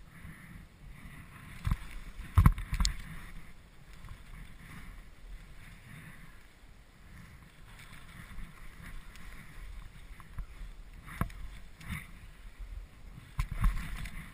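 Skis hissing through deep powder snow in repeated swells, with a few sharp knocks, the loudest a cluster about two and a half seconds in and more near the end.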